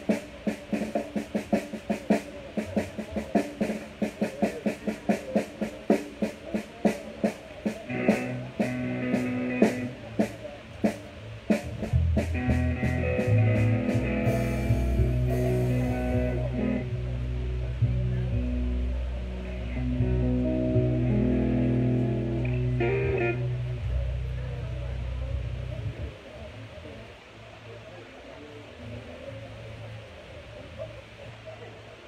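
Drum kit struck in a steady run of single hits, about three a second, with electric bass and guitar coming in with held notes and chords partway through; the band plays loudly for a while and then stops near the end, as in a pre-set soundcheck.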